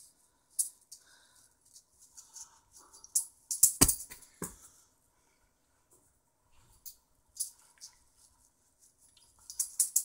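Juggling balls being handled between runs: scattered light clicks, with a louder knock a little under four seconds in.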